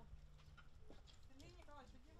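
Very faint distant voices, barely above the background, with a faint steady low hum in the first half.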